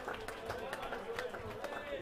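Indistinct chatter of a bar crowd between songs, several voices overlapping, with scattered sharp clicks and knocks.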